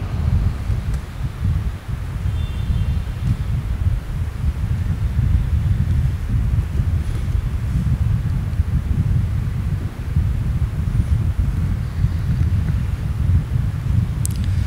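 Steady low rumble of moving air buffeting the microphone, fluttering unevenly.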